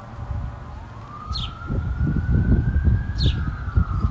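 A siren in a slow wail: one tone climbs steadily for about two and a half seconds, peaks near the end, then starts to fall. Under it runs a low, uneven rumble.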